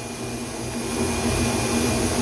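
Steady rushing air noise from a machine, like suction, growing a little louder about a second in, with a faint low hum underneath.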